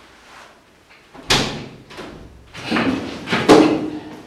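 A sudden loud bang about a second in, followed by a cluster of further knocks and clatter near three seconds.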